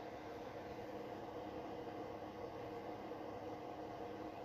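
Quiet room tone: a faint, steady hiss with a low hum and no distinct events.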